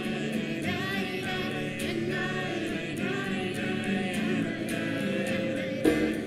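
A group of voices singing together in unison, with an acoustic guitar played along.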